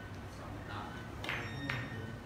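Carom billiard balls striking each other: two sharp clicks with a short ring about a second and a half in, after a fainter click earlier.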